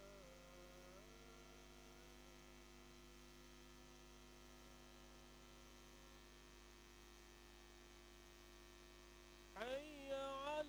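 Near silence with a steady electrical mains hum. A faint voice dies away in the first second, and a chanting voice starts loudly just before the end.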